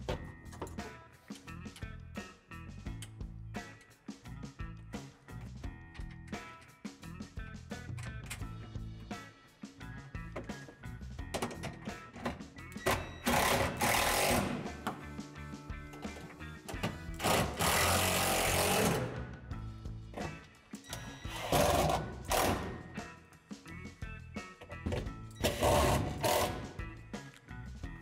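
Cordless driver running in several short bursts of a second or two each in the second half, driving the screws and bolts that fix a heater's mounting bracket into screw anchors in a plastic wall, over steady background music.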